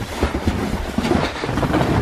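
Footsteps crunching on a packed-snow floor as several people walk, heard as an irregular run of low thumps over a steady rustling noise.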